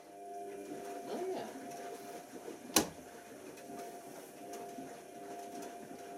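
Tricity Bendix AW1053 washing machine filling for its pre-wash, a steady hum of several even tones. A single sharp click about three seconds in is the loudest sound.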